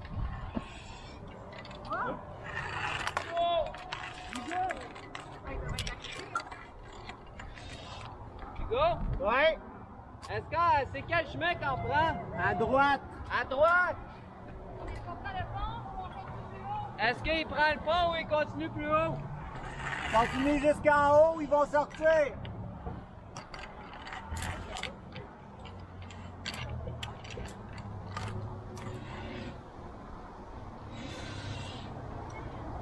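Scattered sharp metal clicks and clanks of climbing gear on a via ferrata's steel rungs and cable, with two longer stretches of a warbling sound that slides quickly up and down in pitch, the loudest thing heard.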